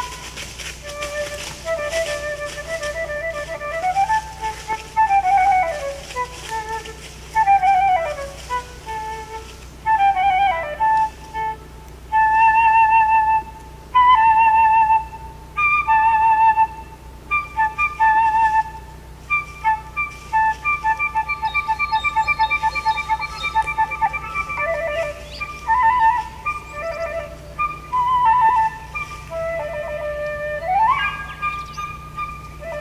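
Solo wooden flute playing a slow melody, with long held notes that waver in pitch and several slides up and down between notes.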